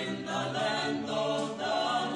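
A small mixed group of men and women singing a responsorial psalm together in parts, with held notes.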